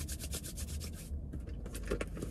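Hands rubbing briskly together, working in hand sanitiser, in quick repeated scraping strokes with a short pause about a second in.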